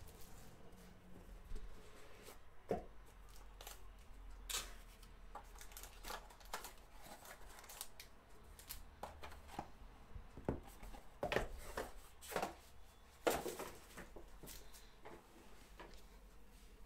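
Hands opening a cardboard trading-card box and lifting out foil-wrapped packs: faint, scattered rustles, taps and scrapes of cardboard and foil, with several sharper handling noises in the second half.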